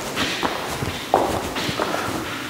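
Footsteps on luxury vinyl plank flooring in an empty, unfurnished room: several separate steps.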